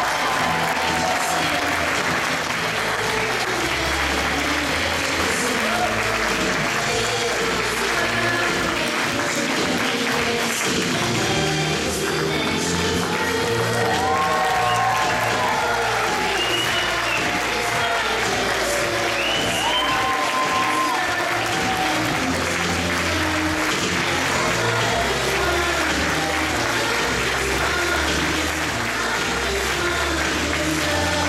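Audience applauding steadily, with music playing underneath.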